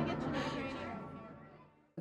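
Archival footage audio of a woman crying out and whimpering in pain amid commotion, fading out to silence near the end.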